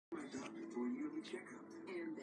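Television sound playing in the room, heard faintly: a voice over music.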